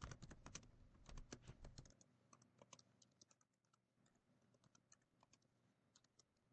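Faint typing on a computer keyboard: a quick run of keystrokes, densest in the first two seconds, then sparser, quieter taps.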